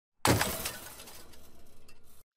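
Glass-shattering sound effect: a sudden loud crash about a quarter second in, fading away over the next two seconds.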